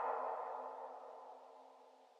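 The closing fade of a minimal / deep tech electronic track: a held low synthesizer tone and its echoing tail die away steadily to nothing.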